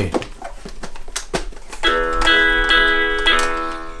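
Toy acoustic guitar with built-in electronic sound, the Coco Miguel guitar, playing guitar music through its small speaker. A few faint clicks come first, then a chord rings for about a second and a half from about two seconds in and fades.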